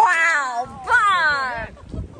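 Two loud, high-pitched drawn-out vocal calls, the first rising then falling in pitch, the second gliding down and lasting a little under a second.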